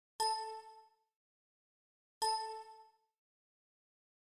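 Two identical bell-like dings about two seconds apart, each a sharp strike that rings out and fades within a second.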